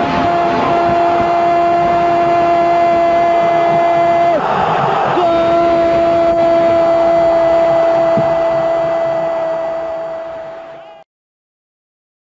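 A Spanish-language football commentator's long held shout of "gol" on one steady pitch, breaking for a breath a little past four seconds in, then held again for about six more seconds while fading, over crowd noise. The sound cuts off to silence about eleven seconds in.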